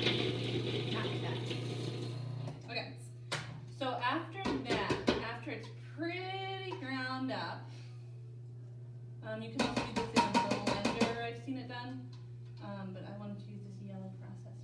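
Yellow food processor grinding wet paper scraps into pulp runs for about two and a half seconds and stops. Then come clicks and knocks of its plastic lid and bowl being handled, over background music with singing.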